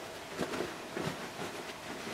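Faint rustling of a cloth bag being handled, with a few soft brushes as its corners are pushed through from the inside.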